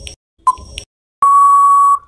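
Quiz countdown-timer sound effect: one last short tick with a brief ringing tone about half a second in, then a long steady beep of nearly a second that signals time is up.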